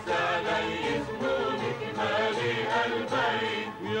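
A chorus of voices singing a song in Arabic, with musical accompaniment.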